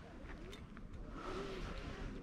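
Faint, steady outdoor background noise with a short click right at the start.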